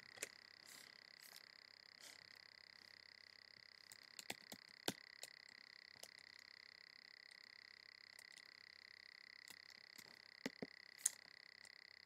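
Near silence: room tone with a faint steady high-pitched whine, broken by a scattered handful of faint clicks from a computer mouse working the slides.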